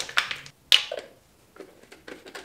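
Plastic applicator bottle of hair dye mixed with developer being shaken in quick strokes, its contents sloshing, ending after a moment; then a single sharp clack, the loudest sound, followed by faint handling of the bottle.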